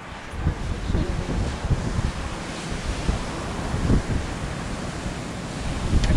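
Ocean waves breaking against the shore below, with wind gusting over the microphone in uneven low rumbles.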